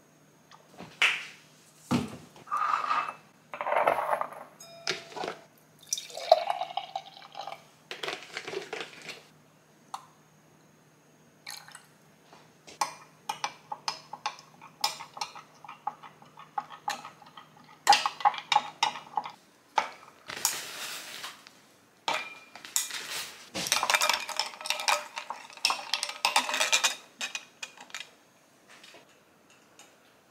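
Matcha latte being made at a kitchen counter: glass and utensils clinking and tapping again and again, with liquid poured into a glass. A faint low hum runs under the first two thirds.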